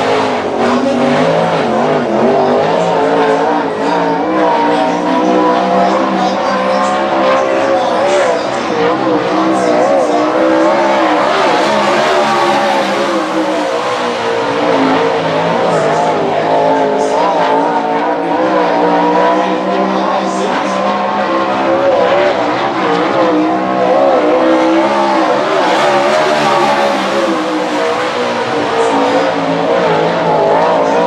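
Winged dirt-track sprint car's V8 engine running hard through a solo qualifying lap, loud and unbroken, its pitch wavering and swelling as the car accelerates and backs off around the oval.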